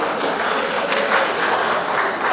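Live audience clapping: many hands at once in a hall.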